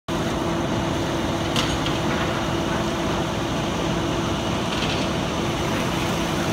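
Fire engine's diesel engine running at a steady speed to drive its pump, a constant mechanical hum, with a couple of faint brief clinks.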